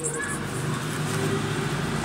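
A steady low hum of background noise with a faint held drone and no clear events, like a running motor or traffic.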